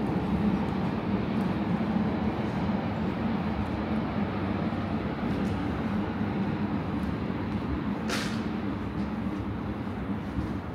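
A train running on the tracks beyond the railway fence: a steady rumble that eases a little near the end, with a brief hiss about eight seconds in.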